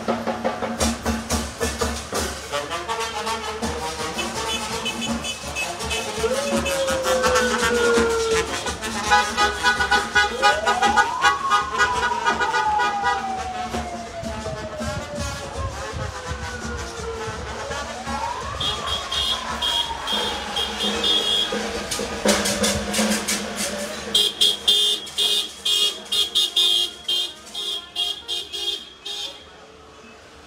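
Cimarrona brass band playing, with car horns honking about halfway through and again near the end. Three times, a wail rises quickly and then falls slowly.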